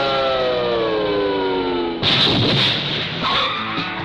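A car engine held at high revs, its note falling slowly in pitch for about two seconds. About halfway through it gives way to a harsh burst of tyre skid noise, and music comes in near the end.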